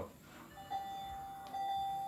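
Electronic alarm tone from hospital bedside equipment. A steady, pure-toned beep starts about half a second in and sounds again about a second later.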